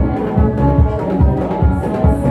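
Live Ethiopian band music played through speakers: a steady drum beat about three to four times a second under a sustained melodic line.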